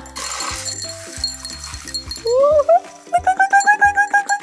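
Stainless steel ball chain rattling and hissing as it streams out of a drinking glass for about the first second and a half, over light background music. About two seconds in, a woman's rising 'ooh' of surprise starts and is held for over a second.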